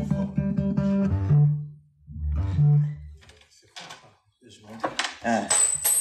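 Electric bass and electric guitar playing together: deep sustained bass notes under plucked, ringing guitar notes for about the first three seconds. Then the sound drops out almost completely. Near the end a short exclamation and a thin high whine come in.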